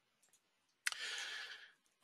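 A faint sharp click just under a second in, followed by a short breathy hiss of under a second: a mouth click and intake of breath at the microphone before speech.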